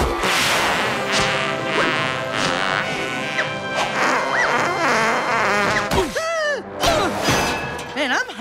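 Cartoon score with slapstick sound effects: a hit at the start, sliding swoops in pitch, and a run of crashes and whacks about six to seven seconds in.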